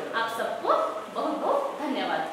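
A woman speaking, her voice rising in pitch on several short syllables.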